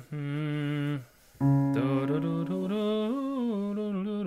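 A man humming with closed lips: one held note for about a second, then after a short pause a phrase of notes that steps up and back down.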